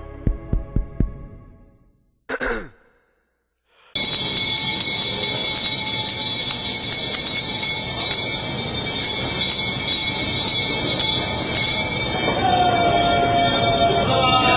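A hand bell rung continuously by the auctioneer from about four seconds in, a steady, piercing ring: the bell that opens a tuna auction. Before it, fading music and a few knocks end in a brief silence.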